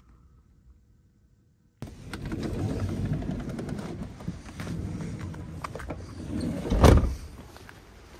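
Quiet at first, then suddenly a VW Crafter van's side door opening onto blustery outdoor noise with scattered clicks and knocks. Near the end comes a single heavy thud, the loudest sound, as the van door is shut.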